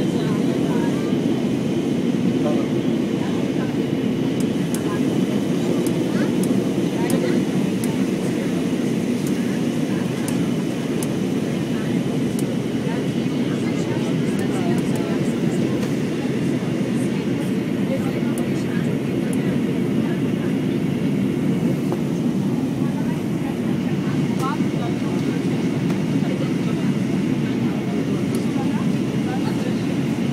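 Steady cabin noise of an Airbus A320 airliner in descent: an even, deep rush of airflow and jet engine noise heard from inside the passenger cabin.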